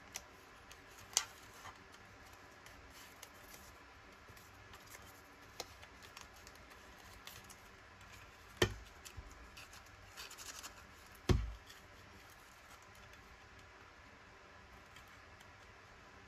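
Plastic craft tab punch being handled, with paper rustling as a strip is worked into its slot. Two louder clunks of the punch come about nine and eleven seconds in, among a few lighter clicks.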